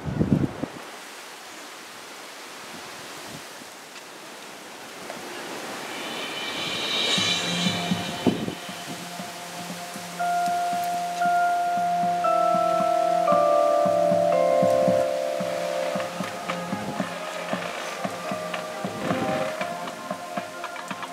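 Marching band opening its show softly: a high chime-like shimmer about six seconds in, then long held notes from the winds that grow louder and step slowly through a melody, with light percussion clicks coming in near the end. A short thump sounds at the very start.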